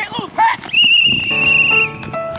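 A referee's whistle blown once: a single steady, high-pitched blast of about a second, starting sharply just under a second in, over background music and voices.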